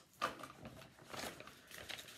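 Soft rustling of paper sheets being handled and pulled out, in a few irregular scuffs, the first and loudest just after the start.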